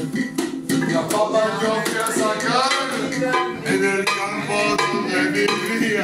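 Live amateur Latin-style music: voices singing over a hand drum being beaten and a maraca shaken in rhythm.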